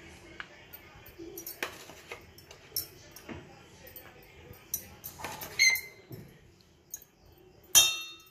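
Metal spoon clinking and scraping against a stainless steel bowl while stirring chopped onion into a soft mashed filling. Scattered light clicks run throughout, with louder ringing clinks about five seconds in and again near the end.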